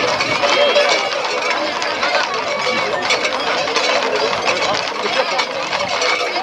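Crowd of people talking and shouting over one another around a herd of horses, with the clatter of hooves on the road mixed in.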